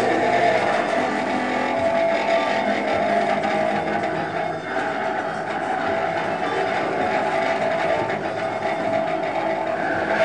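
A taut wire stretched across a wall, bowed with a violin bow, giving a sustained drone of several overlapping steady tones.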